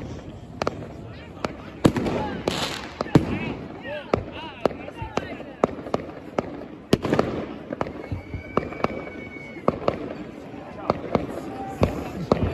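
New Year fireworks going off around a town: a steady rumble of far-off bursts with many irregular sharp bangs and cracks, some close and some distant, about two a second.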